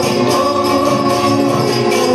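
Devotional group singing during an aarti, with long held notes over steady rhythmic metallic jingling a few times a second.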